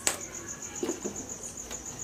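Cricket chirping steadily in a fast, even pulse of about ten chirps a second, with a sharp click at the start.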